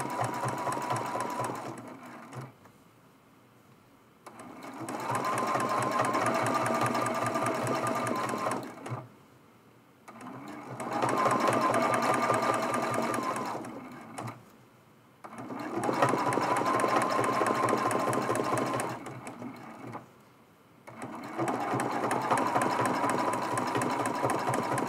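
Sewing machine stitching appliqué fabric in five runs of a few seconds each, stopping for a second or so between runs. A steady whine holds through each run.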